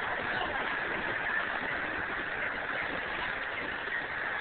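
Steady outdoor background noise with no distinct events, an even hiss and rumble.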